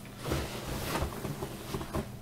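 Soft rustling of cloth being handled close to the microphone, with a few dull low bumps.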